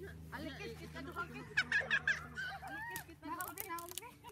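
Several children shouting and squealing at play, with a burst of high-pitched shrieks halfway through.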